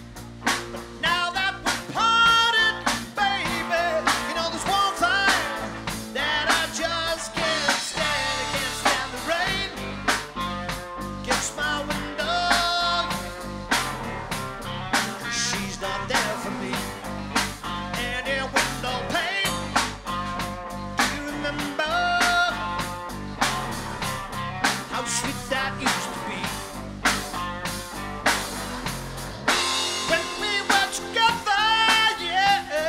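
Live rock band playing: electric guitars over bass and drums with a steady beat, with a high lead line that bends and wavers in pitch.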